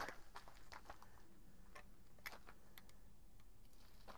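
Near silence: a quiet background with a few faint, scattered light clicks.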